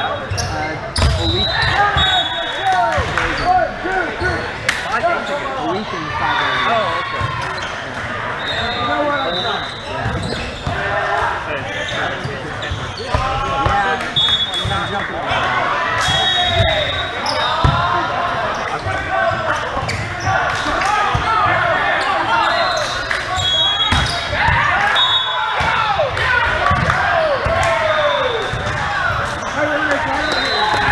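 Indoor volleyball being played in a large echoing hall: repeated sharp smacks of the ball being passed, set and hit, short high sneaker squeaks on the court floor, and players' voices calling over one another throughout.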